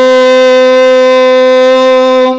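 A male chanter holds one long, steady note at the end of a Vedic mantra line, amplified through a microphone.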